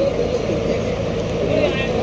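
Bus engine and road noise heard from inside the passenger cabin as a steady low hum, with passengers chattering over it.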